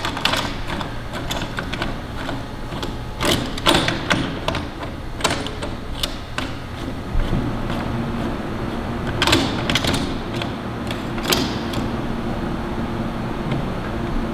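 Irregular metal clicks, taps and knocks as a galvanized sheet-metal collar is fitted and tightened by hand around a dust drum's inlet, over a steady low hum.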